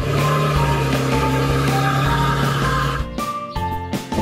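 Upbeat children's background music with a steady engine rumble, as of a garbage truck driving, under it for about three seconds; then the music plays on alone.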